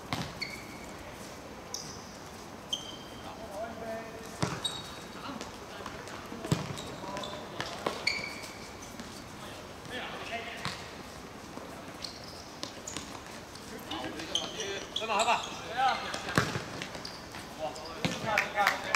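Seven-a-side football on a hard court: sharp knocks of the ball being kicked and bouncing, scattered short high squeaks, and players' shouts that grow busier and louder in the last few seconds.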